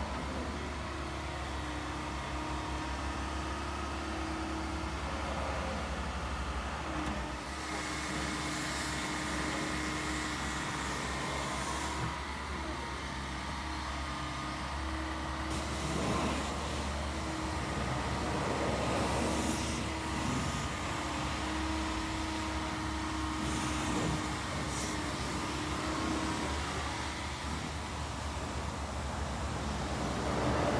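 Terex/Yanmar TC125 crawler excavator running and tracking across concrete: a steady diesel engine hum with a constant high whine over it, and a few short knocks and clanks along the way.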